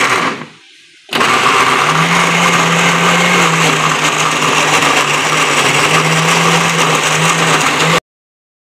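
Electric countertop blender grinding chunks of fresh tomato into a purée: a short burst stops just after the start, then about a second in the motor starts again and runs steadily and loudly with a constant hum.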